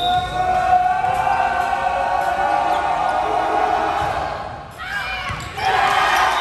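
Indoor volleyball rally on a gym court: the ball being struck among players' and spectators' voices calling out, with a renewed burst of calling as the rally reaches an attack at the net near the end.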